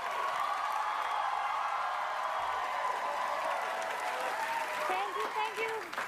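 Studio audience applauding and cheering, a steady wash of clapping, with a voice coming in near the end.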